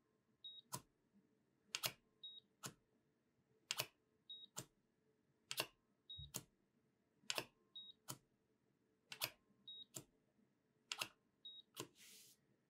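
The probe tip of a LEPTOSKOP 2042 coating thickness gauge clicks down onto a steel reference block and lifts off, roughly every two seconds, during a zero calibration. Each reading is marked by a short, high beep from the gauge, seven in all.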